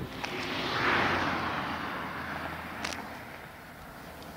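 A road vehicle passing close by: its noise swells to a peak about a second in and fades away over the next two seconds, with a couple of short clicks.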